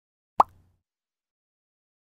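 A single short pop sound effect with a quick upward slide in pitch, about half a second in.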